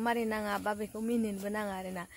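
A woman talking continuously, with a steady faint high-pitched hiss in the background.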